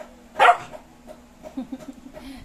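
A puppy at play gives one short, loud bark about half a second in, followed by a few short, quieter sounds near the end.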